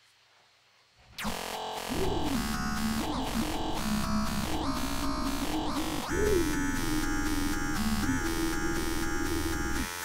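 Arturia MiniFreak V software synthesizer playing a held, buzzy synth sound that sweeps up and down repeatedly. It starts about a second in and moves to a different held sound about six seconds in.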